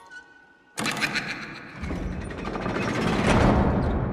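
Horror-film soundtrack: after a brief hush, a sudden dense, rattling swell of music and sound effects starts about a second in and grows steadily louder.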